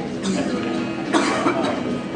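A person coughing, with the loudest cough about a second in, over a background murmur of voices.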